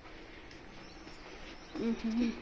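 Steady buzzing drone of a mosquito fogging machine working outside, with a short voice-like sound near the end.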